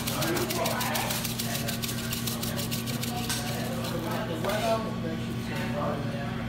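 Crushed red pepper flakes shaken from a glass shaker jar with a metal lid: a fast run of light rattling ticks for about the first three seconds, then stopping. A steady low hum and background voices run underneath.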